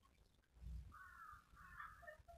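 Faint: a soft low thump, then two short harsh bird calls, one about a second in and one near the end.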